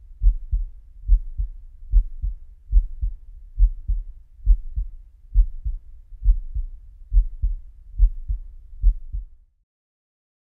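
Amplified heartbeat, picked up by a heartbeat monitor and played as music: low double thumps (lub-dub) repeating steadily about 70 times a minute over a faint hum. It stops shortly before the end.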